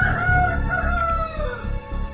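A rooster crowing once: one long call that slowly falls in pitch and ends about a second and a half in, over background music with a low pulsing beat.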